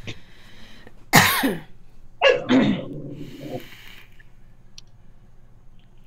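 A woman coughs hard about a second in and again, more throatily, about two seconds in, with breathy hissing of vape draws and exhales around the coughs.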